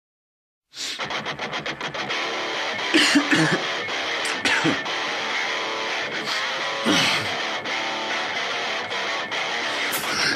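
Intro of a metalcore song: an electric guitar riff starts about a second in, at first with rapid picked notes, with three brief sliding sounds over it, before the full band enters.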